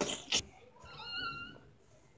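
A cat meowing: one thin, high meow about a second in, after two short sharp noises at the start.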